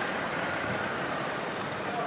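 Steady outdoor street background of traffic noise, with faint distant voices.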